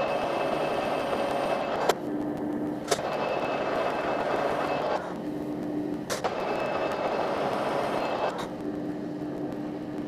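Metal lathe running, its four-jaw chuck spinning as the tool turns metal stock. The steady machine noise shifts a few times, with sharp clicks about two and six seconds in.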